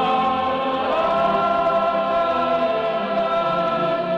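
A wind band playing long held chords, clarinets among them; the chord shifts about a second in.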